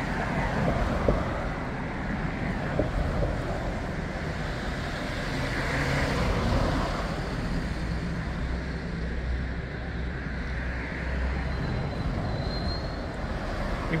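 Street traffic: passing motor vehicles with a steady low engine rumble that swells and fades as they go by.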